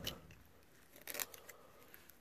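Faint scraping of a blade levered under a fitting on a brake master cylinder, with a couple of small clicks about a second in.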